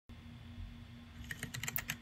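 Typing on a small ortholinear mechanical keyboard: quick, faint key clicks start a little past halfway and come faster toward the end.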